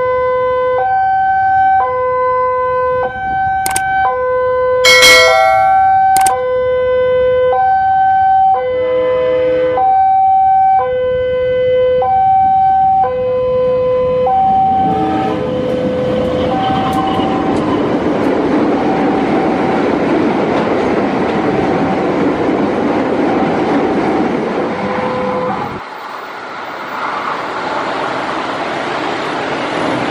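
Level-crossing warning alarm sounding a steady two-note ding-dong, low then high, repeated over and over. About halfway in, the rumble and clatter of a diesel-hauled train of tank wagons passing at speed joins it. The alarm stops a few seconds before the end while the train noise carries on, and there is a brief loud sharp sound about five seconds in.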